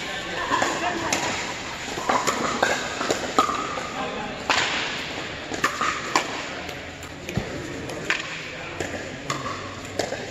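Pickleball paddles striking a plastic ball: a series of sharp pops at irregular intervals during a rally, with more pops from games on nearby courts, in a large hall. Background voices run underneath.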